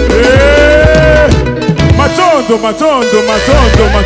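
Live band playing upbeat African dance music on drums, bass and electric guitars. A long held note comes first, the bass drops out briefly, and then a run of quick bending notes plays over the drums.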